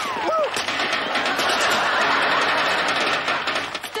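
Studio audience laughter, a big laugh that swells and then fades near the end.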